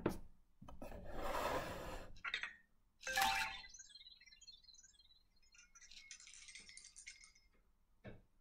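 Anki Vector home robot playing its holiday animation sound effects: faint, tinkling, jingly chimes in scattered short bursts, in answer to a "happy holidays" voice command.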